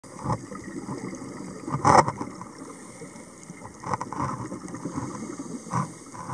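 A scuba diver's regulator breathing underwater, a loud burst of exhaled bubbles about two seconds in. Shorter hissing breaths come near the start, around four seconds in and near the end, over a low underwater rumble.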